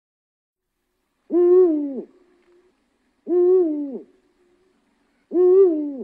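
Cheetah calling: three calls about two seconds apart, each under a second long, holding one pitch and then falling away at the end.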